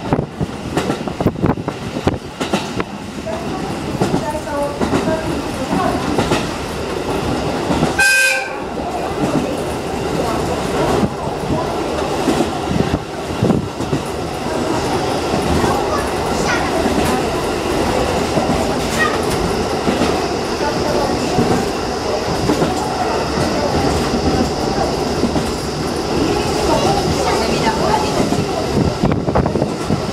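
A train running, heard from inside a carriage with open windows: steady rumble and wind noise with wheels clattering over rail joints. A short horn blast sounds about eight seconds in.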